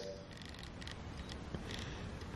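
Faint handling noise from an aerosol spray can being turned in the hand, with a few light clicks.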